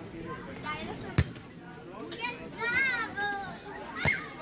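A volleyball struck by hand during a beach rally: one sharp smack about a second in and another at the very end as a player spikes it. Players shout calls in between.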